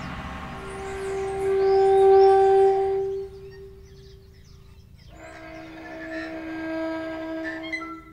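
Two long held horn-like notes: the first swells to its loudest about two seconds in and fades out; the second, slightly lower, comes in about five seconds in and holds to the end.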